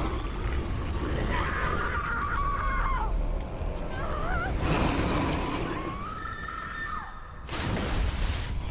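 Film soundtrack: a man being choked, gasping and straining with wavering cries. Near the end comes a sudden rush of noise like a splash into water.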